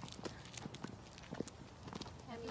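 High heels clicking on a hard floor as people walk, about three to four sharp, irregular steps a second.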